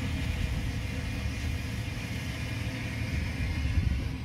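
Steady low rumble with an even high hiss, the background noise of an airport apron around a parked airliner. The hiss drops away near the end.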